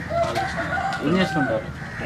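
A rooster crowing, one drawn-out call, with a man's voice briefly over it about a second in.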